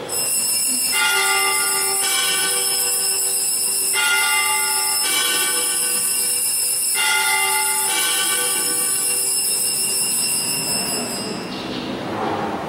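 Electronic keyboard holding sustained high chords that change every second or two, played at the elevation of the host during the consecration.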